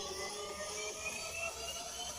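Electronic intro music with several pitches gliding slowly upward together, like a build-up riser.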